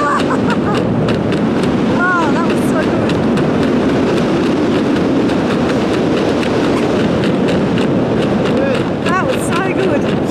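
Steady wind rushing over the camera microphone during a tandem parachute descent under canopy. Short voiced exclamations or laughs break through at the start, about two seconds in, and again near the end.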